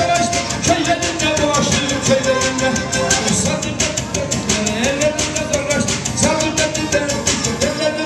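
Black Sea kemençe playing a fast horon dance tune, amplified through speakers, its wavering, sliding melody over a quick, steady percussion beat.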